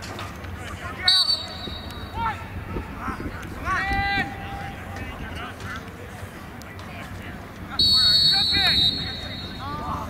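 A referee's whistle blown twice, each a shrill steady blast of about a second, one shortly after the start and one near the end. Players and sideline spectators shout between the blasts.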